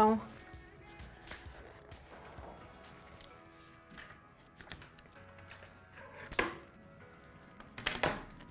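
Quiet background music with small handling noises on a table as a paper pattern is lifted off fabric and tools are picked up and set down. One sharp knock comes about six and a half seconds in.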